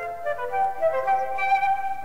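Short musical interlude: a flute playing a slow melody of held notes.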